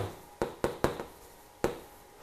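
Chalk tapping on a chalkboard as characters are written: four short, sharp taps, three close together in the first second and one more near the end.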